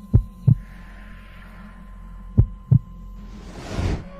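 Heartbeat sound effect: two slow lub-dub double thumps about two seconds apart over a low steady hum, then a rising whoosh near the end.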